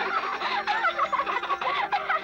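Rapid, jittery warbling and chirping cartoon sound effects over a few held tones, accompanying an animated transformation.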